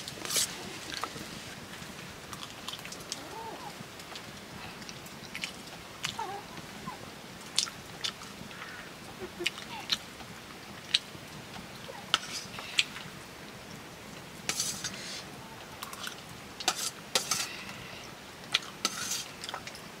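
A metal spoon clinking and scraping against a stainless steel bowl while noodles are mixed and eaten, with chewing between the scattered clicks, which come in a few quick clusters near the end.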